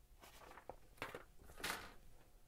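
Faint handling noise from a plastic model-kit runner and its paper instruction sheet: three short rustles and light clicks, the sharpest about a second in.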